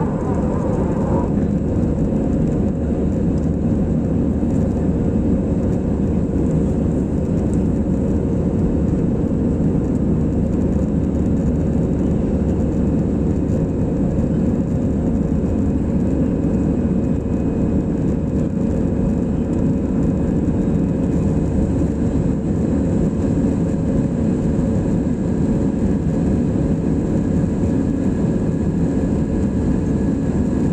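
Airbus A320 cabin noise in the climb after takeoff, heard inside the cabin by the wing: a steady, deep roar of the jet engines and rushing air, with a few faint steady hums running through it.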